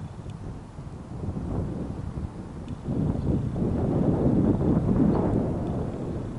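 Wind buffeting the camera microphone: a low, uneven rumble that grows louder about three seconds in.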